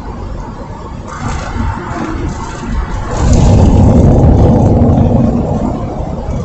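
A motor vehicle passing close by, heard from inside a van's cabin: a low rumble that swells about three seconds in and eases off near the end.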